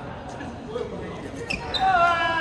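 Badminton rally: a racket hits the shuttlecock with a sharp crack about one and a half seconds in. A loud, high court-shoe squeak on the gym floor follows near the end.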